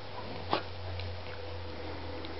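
A golden retriever puppy play-wrestling with a kitten on a bed gives one short sharp yip about half a second in, with a few faint clicks of the scuffle. A steady low hum runs underneath.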